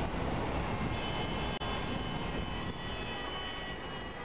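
Steady, rumbling background noise with faint high tones running through it, briefly cutting out about one and a half seconds in.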